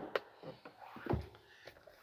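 Faint handling sounds of the plastic storage bin and lid under a rear seat: a couple of light clicks at the start and a soft, low thump about a second in.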